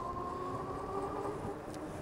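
Dual hub motors of a Philodo H8 AWD ebike whining steadily while riding, over a faint low road and wind rumble; the highest note of the whine fades out about a second and a half in.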